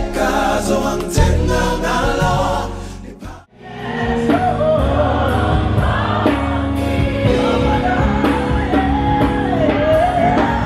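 One piece of music fades out about three and a half seconds in. Then a choir sings a gospel song with instrumental backing, holding long notes.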